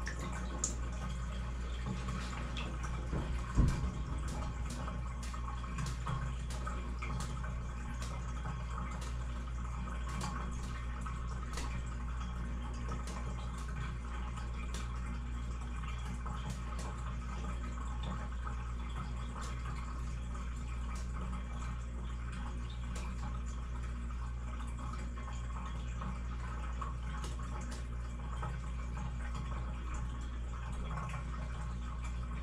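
Bathtub drain slowly taking down standing dirty water after plunging: faint irregular drips and small gurgling clicks over a steady low hum, the sign of a clog only partly cleared. One louder knock about three and a half seconds in.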